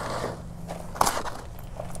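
A plastic scooper scraping and pushing loose potting soil mixed with perlite around the edges of a pot: a gritty, crunchy rustle, with one sharp knock of the scooper against the pot about a second in.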